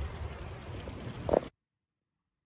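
Low, steady wind rumble on the microphone over outdoor ambience, with a short louder sound just before the audio cuts to complete silence about one and a half seconds in.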